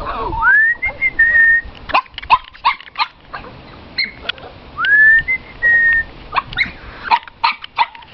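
A person whistling to call a puppy: two rising whistles that level off and hold, one near the start and one about halfway through, with runs of short sharp clicking sounds in between.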